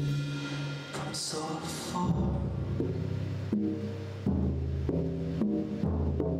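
Live band music driven by a drum kit played with soft mallets: tom-tom strokes and cymbal washes over low held notes that step to a new pitch every second or so.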